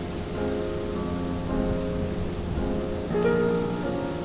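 Slow piano music, a new sustained chord struck every half second to a second, over a steady hiss of rain falling on water.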